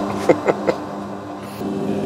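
Steady, even hum of underground coal-mining machinery running, with a short laugh about a third of a second in.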